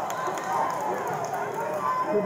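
Many voices of mat-side spectators and coaches calling out at once, overlapping, in a large gymnasium.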